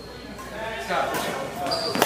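Badminton rally on a hardwood gym court: racket strikes on the shuttlecock as a few sharp pops, the last and loudest right at the end. A short sneaker squeak comes just before it.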